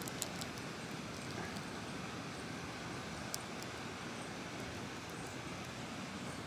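Steady outdoor background hiss with a few sharp little clicks, twice near the start and once a little past the middle, from hands handling and posing a plastic action figure.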